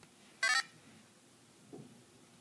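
A single short, high electronic beep from an iPod touch about half a second in, as its pattern lock screen is unlocked.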